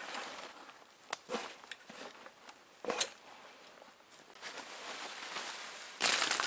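Quiet rustling and handling sounds, such as footsteps in dry leaves and gear being moved, with a few sharp knocks; the sharpest comes about three seconds in.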